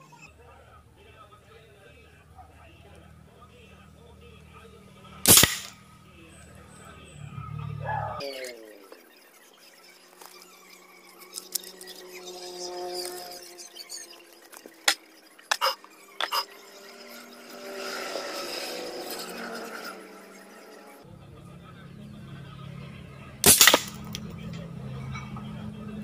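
Two sharp shots from a homemade PVC toy gun built as an FX Impact M3 replica and firing steel balls, about five seconds in and again near the end. A few short clicks come in between.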